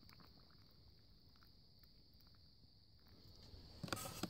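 Very quiet pour of hot water from a stainless steel kettle into a cup of oatmeal, with a few light knocks near the end.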